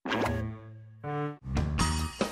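Big Idea production-logo jingle: a short cartoon sound effect with a plop, a second brief tone about a second in, then an upbeat closing-credits song with drums starts about halfway through.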